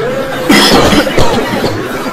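A person coughing and laughing, with a sudden loud cough about half a second in.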